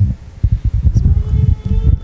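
Handheld microphone being handled: irregular low thumps and rumbling, with a faint steady tone in the second half.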